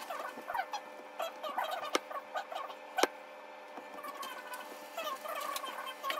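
Busy, bird-like chirping calls, many short rising and falling chirps, over a faint steady hum. Two sharp clicks come about two and three seconds in, as food is set onto a glass plate.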